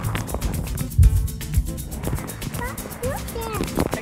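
Background music with a steady beat, over which water sloshes against a camera held at the surface of a swimming pool, with one loud low thump about a second in. Near the end a young child's high voice babbles.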